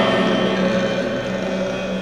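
Heavy rock music: a held electric guitar chord ringing out and slowly fading, with no new notes struck.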